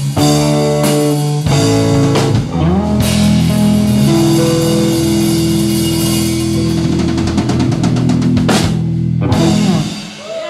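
Live blues band, electric guitars, bass and drum kit, playing the closing bars of a song: a few punched stop chords, then a long held guitar note over a quickening drum roll and cymbals, cutting off on a final hit near the end.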